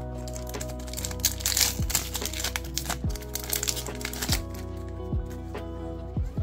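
Foil trading-card booster pack crinkled and torn open, then the cards handled, with the loudest crackling between about one and four seconds in. Background music with a low beat plays throughout.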